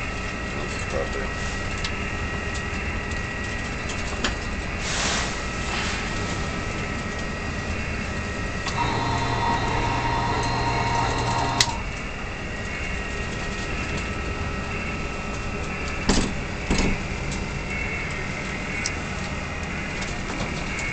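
Steady machinery drone inside a ship's wheelhouse in a storm, with a few knocks and a held tone for about three seconds in the middle.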